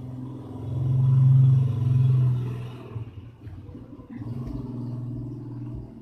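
A low motor hum that swells to its loudest about a second and a half in, eases off, then rises again from about four seconds.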